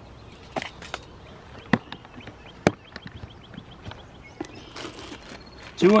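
Scattered sharp clicks and light knocks from handling a measuring tape and a plastic cooler lid, with a quick run of small ticks about halfway through.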